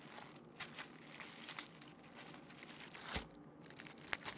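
Thin plastic bag crinkling faintly in the hands as it is worked off a small potted plant, with one sharper click about three seconds in.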